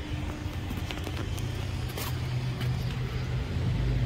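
Steady low mechanical hum with a few faint clicks.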